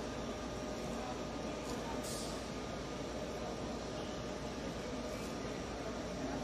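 Steady background din of a busy exhibition hall, with a constant hum and distant chatter. A short fabric rustle comes about two seconds in as a cloth specimen is slid onto the tester's holder.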